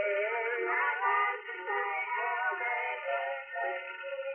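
A boys' gospel quartet singing in harmony, from an old radio recording whose sound is thin and muffled, with no highs or deep lows.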